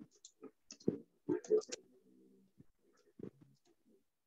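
Computer keyboard keys clicking irregularly as a short phrase is typed, about a dozen keystrokes, with a brief low voice murmuring among them.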